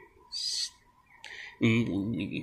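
A single short, high bird chirp about half a second in, then a man's voice starts near the end.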